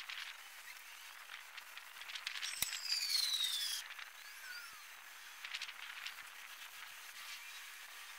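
Faint scratching and clicking of a garden rake working loose soil and worm castings across a bed. A short falling, high-pitched whistle comes about a third of the way in.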